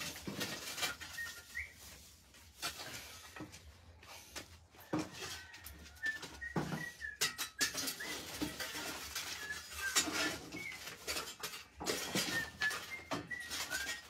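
Scattered knocks and scrapes of firewood being poked and shifted in a wood-fired adobe stove, with short high bird chirps repeating in the background.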